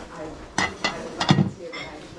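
China dinner plates clinking against each other as they are handled and set back on a stack: several sharp clinks, each with a brief ring.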